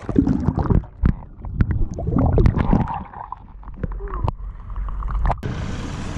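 Muffled underwater sound from an action camera held under lagoon water: gurgling water movement with scattered sharp clicks and knocks, dull with the higher sounds gone. It stops abruptly about five seconds in.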